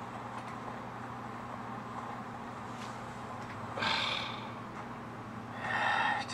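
Quiet background with a steady low hum, and one short breathy rush of noise about four seconds in.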